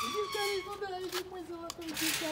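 Metal gate hinges squealing as the gate swings open, the squeal ending just after the start. This is followed by a long, wavering, high-pitched vocal sound.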